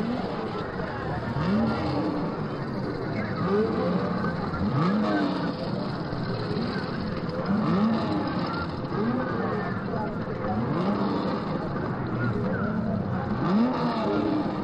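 Racing engines revving over and over, each rev a quick rise in pitch, over a constant background of voices.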